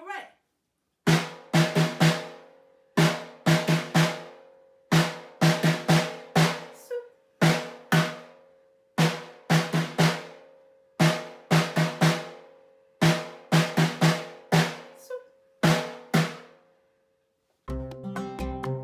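Snare drum struck with sticks in a taiko rhythm, 'don doko don': a single hit, two quick hits and another hit, in phrases repeated about every two seconds, with an extra hit closing some phrases. The pattern is played through twice and stops about 16 seconds in. Near the end, other music starts.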